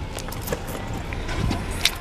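Vehicle engine idling as a low steady rumble, with a few sharp clicks over it, the loudest near the end.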